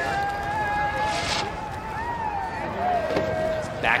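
Drawn-out voice calls, whoops held on one pitch and a few gliding cries, over a steady outdoor hiss, with a short burst of hiss about a second in.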